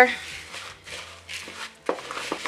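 A spatula stirring a dry mix of rolled oats, seeds and dried fruit in a plastic mixing bowl: several soft rustling, scraping strokes, and a sharp tap near the end.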